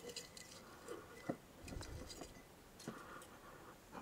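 Faint rustling of herb leaves and a few light clicks and taps as dill and currant leaves are pressed by hand into small glass jars.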